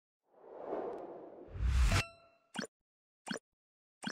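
Logo-reveal sound effect: a whoosh that swells into a deep hit about two seconds in, cut off sharply with a brief ringing ding, then three short pops a little under a second apart.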